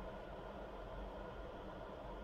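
Steady hiss of an electric kettle heating water, still short of the boil.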